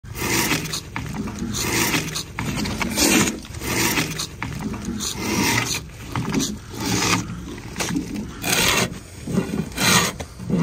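Drawknife strokes rasping along a hewn timber log, repeated about once a second.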